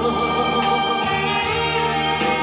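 Music: a Korean song played over a backing track, with sustained chords throughout at a steady level.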